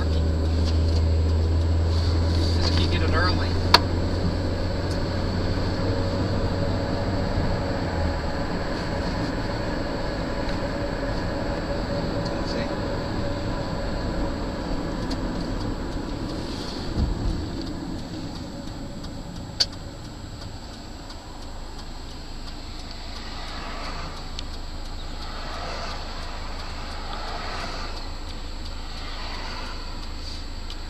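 Road and engine noise of a car while driving, heard from inside the cabin: a steady low drone that drops away about eight seconds in, then a gradually quieter hum. Two sharp clicks, one near the start and one about two-thirds through.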